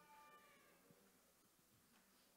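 Near silence: room tone, with a faint high pitched tone fading out in the first half second.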